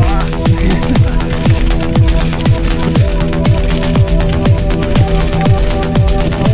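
Electronic music with a steady beat about twice a second. Each beat carries a short falling bass note, over held chords.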